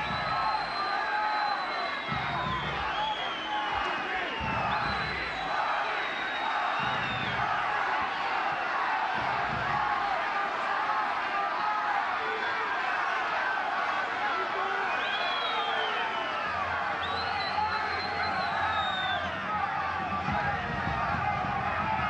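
Stadium crowd noise at a football match: many voices shouting and chanting at once, steady throughout, with several long, high whistles rising above it.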